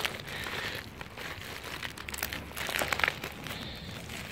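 Plastic packaging wrap crinkling and rustling as a wrapped chrome sissy bar is handled, in short scattered crackles.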